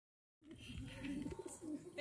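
White doves cooing faintly, with low wavering calls that come and go.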